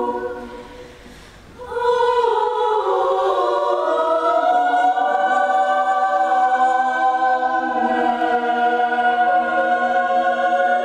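Women's chamber choir singing a cappella: a held chord fades away, and after a short pause the voices come back in together about two seconds in, holding long chords while one line slides upward.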